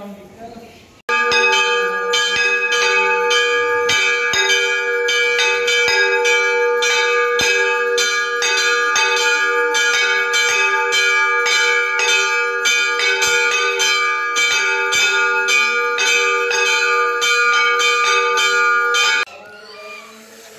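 Large hanging brass temple bell rung by hand over and over in quick succession, its ringing tones carrying on between strokes. The ringing starts suddenly about a second in and cuts off just before the end.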